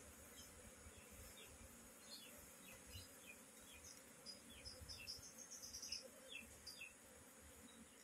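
Faint buzzing of an Asian honey bee (Apis cerana) colony swarming over its exposed combs. A run of short, high, falling chirps sounds from about two to seven seconds in.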